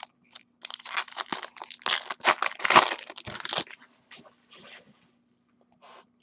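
Foil wrapper of a trading-card pack being torn open and crinkled, a dense crackling run of about three seconds followed by a few faint rustles.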